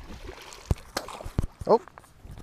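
A released bass hitting the pond surface with a splash at the start, the water spraying and settling, then a few sharp clicks.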